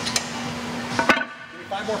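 A sharp metallic clank about a second in, from the plate-loaded seated calf-raise machine: its weight plates and lever bar knocking together. A lighter click comes just before it, over a steady gym hum.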